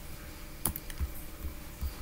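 Computer keyboard keys pressed: about four sharp, separate clicks spread unevenly over two seconds, from a keyboard shortcut used to switch windows. A faint steady hum lies underneath.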